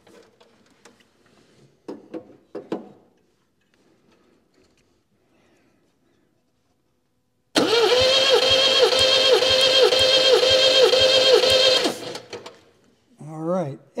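MGB starter motor cranking the four-cylinder engine over with the ignition off and the throttle held wide open, for a compression test. The pitch dips about twice a second, each dip one compression stroke of the gauged cylinder slowing the engine, for about eight strokes, then cuts off suddenly.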